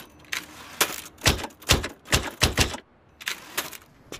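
Manual Hangul typewriter typing: typebars striking the paper in an irregular run of about nine sharp clacks, with a brief pause a little before the end.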